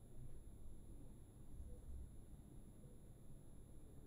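Near silence: room tone with a faint low rumble.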